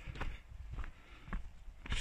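Footsteps of a hiker walking down a gravel path, four steps at about two a second.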